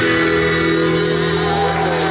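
Live rock band ending a song: the bass and drum beat stops right at the start, and the guitars and band hold a final sustained chord, ringing steadily.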